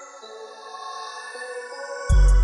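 Trap beat's sustained synth melody playing on its own, with no drums or bass; the notes shift a few times.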